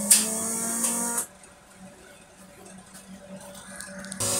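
Starter motor cranking a Chevy 350 test-stand engine. It cuts off suddenly about a second in, leaving only a low background.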